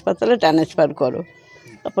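A woman speaking Bengali, pausing briefly about a second in.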